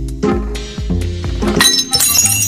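Background music with a repeating bass line; near the end, a bright, ringing crash of glass breaking comes in over it.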